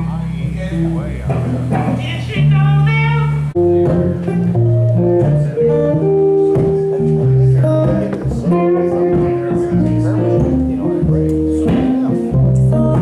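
Live guitar trio playing: a hollow-body archtop electric guitar, an acoustic guitar and an electric guitar, with held notes over a low bass line. The sound changes abruptly about three and a half seconds in, where the clearly played notes begin.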